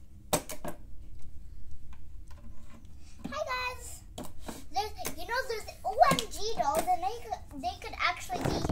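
A young girl's voice vocalizing without clear words through the second half, with a few sharp clicks and knocks of plastic doll-house parts being handled near the start.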